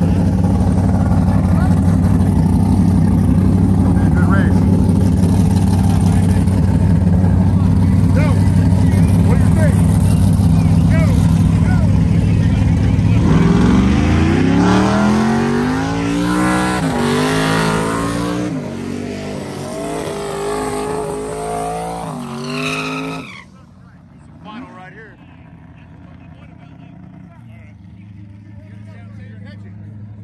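Drag-racing street car engines running loud and steady at the line, then launching about 13 seconds in and accelerating away, rising in pitch through several gear changes. The sound cuts off abruptly a little after 23 seconds, leaving a much quieter background.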